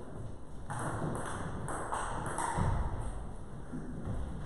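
Table tennis ball bouncing and tapping, a quick run of about six light impacts that ring briefly in the hall, between about one and two and a half seconds in.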